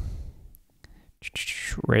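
A man's voice trailing off, a short pause holding a few faint clicks, then soft speech starting again.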